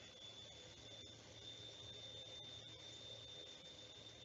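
Near silence: room tone, a faint steady hiss with a thin, high steady tone.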